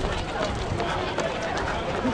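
Indistinct chatter of several people talking as they walk, with their footsteps underneath.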